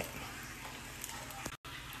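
Faint, steady hiss of background noise, cutting out for an instant about one and a half seconds in.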